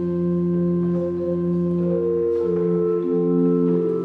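Small wooden chest organ playing slow sustained chords, several held notes changing step by step about once a second.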